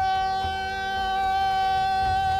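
A man's voice holding one long, loud cry on a single steady pitch, without a break.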